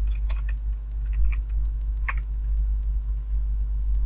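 Computer keyboard keys clicking in short, irregular strokes as a search is typed and edited, over a steady low hum.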